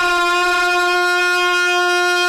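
A male naat singer's voice holding one long, steady sung note, after a wavering melismatic run just before.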